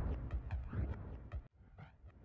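Vinyl record scratching on a turntable: quick back-and-forth pitch sweeps over a heavy low bass, cutting out abruptly about one and a half seconds in and coming back quieter.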